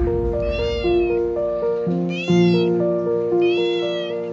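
A young tabby cat meows three times, each call about half a second long and rising then falling in pitch, over background music of steady held notes.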